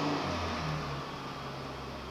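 Steady background hiss with a low hum, the room and recording noise of a small room.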